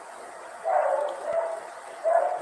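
A dog somewhere off in the room gives two short whining calls, starting a little over half a second in and over by about a second and a half.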